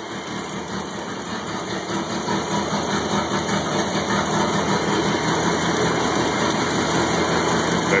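Volvo 245 engine idling steadily while being run on Seafoam engine cleaner, still running rather than stalling on the cleaner.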